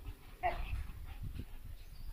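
A dog gives one short call about half a second in, during rough play between an Irish red and white setter and an English springer spaniel.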